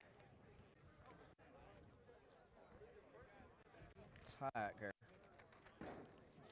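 Near silence: faint outdoor background, broken by a short spoken sound from a person about four and a half seconds in.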